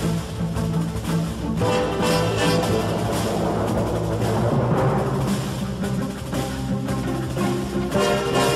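Background orchestral music with timpani and a steady drum beat over sustained held chords.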